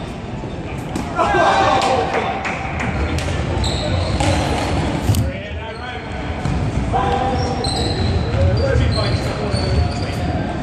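Players' voices calling out loud and echoing in a large sports hall, with running footfalls and short high squeaks of trainers on the wooden court during play.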